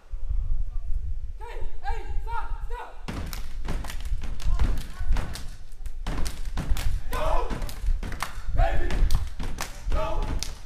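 A step team's routine: heavy thumps for the first three seconds, then a fast run of sharp claps and body slaps from about three seconds in, with short shouted chants between the strikes.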